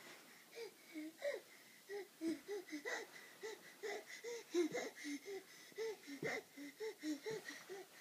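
A seven-month-old baby's short, breathy voiced grunts, about three a second, as she crawls.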